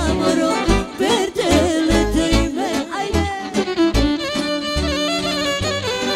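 Instrumental Roma folk music: an electric violin plays a melody with heavy vibrato over a synthesizer keyboard accompaniment with a pulsing bass line.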